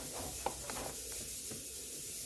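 Faint rubbing and scraping as a pen stirs a runny slime mixture of glue, paint and detergent in a plastic bowl, with one light click about half a second in.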